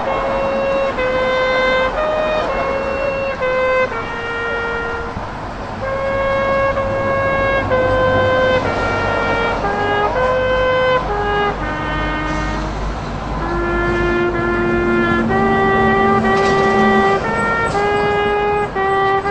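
Brass instruments playing a slow melody of held notes, at times two parts sounding together.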